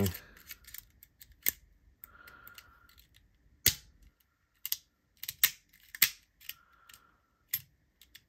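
Irregular sharp clicks and snaps, about eight, from the toggles of a Toggle Tools Mini fidget multi-tool worked by hand, with a couple of short faint scrapes between them. The mechanism is malfunctioning, its tools slipping off their tracks.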